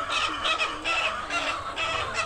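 A flock of caged laying hens clucking, with many short calls overlapping.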